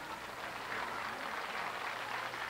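Light audience applause, a radio-drama sound effect, quieter than the dialogue around it.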